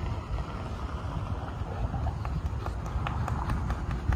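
Wind buffeting the microphone in a low, uneven rumble, with a run of light clicks or taps, about three or four a second, starting about one and a half seconds in.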